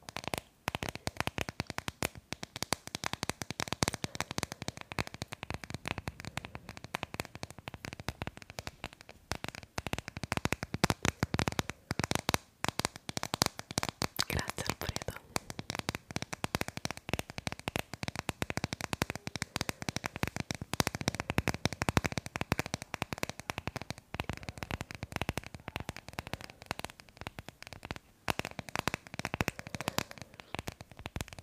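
Fingernails tapping and scratching fast on a hard plastic phone case held right at the microphone: a dense, unbroken run of crisp clicks and scrapes.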